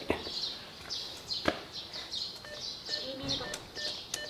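Small birds chirping over and over, short falling chirps about three a second, with one sharp click about one and a half seconds in.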